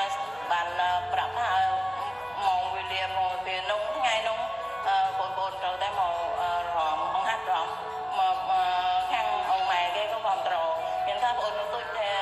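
A song: a singing voice carrying a sliding, ornamented melody over musical accompaniment.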